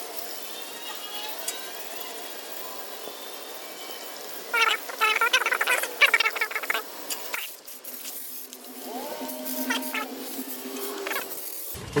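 Sound from a recording of coil cleaner being sprayed, played back at five times speed: a steady hiss with squeaky, high-pitched snatches of sped-up voices, strongest a little before halfway through.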